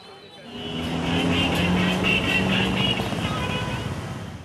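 Busy street noise: a motor vehicle's engine running steadily among the voices of a crowd. It swells in about half a second in and starts to fade near the end.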